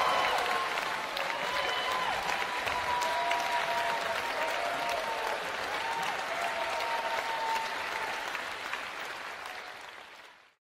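Concert-hall audience applauding steadily after a cello ensemble performance, fading out near the end.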